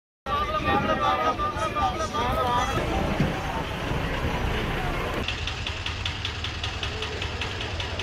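Diesel bus engines idling with a steady low rumble, with people's voices over it for the first few seconds. About five seconds in, a closer engine takes over with a fast, even clatter.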